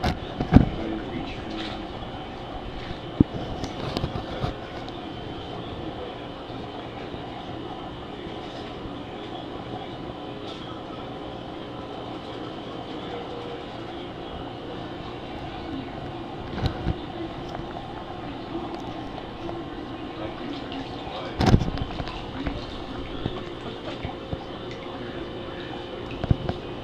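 Steady hum and running-water noise of a live-lobster holding tank's circulation, broken by a few sharp knocks and splashes as the lobsters are handled in the water. The loudest knock comes about twenty-one seconds in.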